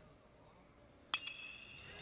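A metal baseball bat strikes a pitched ball about a second in. It gives one sharp ping that rings on for most of a second, over faint stadium background.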